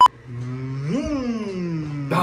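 A short, loud test-pattern beep (a single 1 kHz tone) at the start, followed by a low pitched drone that glides up sharply about a second in and then slowly falls.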